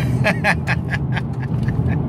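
A man laughing in a run of short bursts that tail off, over the steady low rumble of a car's cabin.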